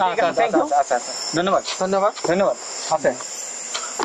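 Talking voices over a steady, high-pitched chorus of crickets chirring in the night.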